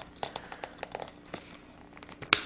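Faint scattered clicks and rubbing of a plastic Anderson power connector being handled and lined up against its mating connector on an e-bike battery.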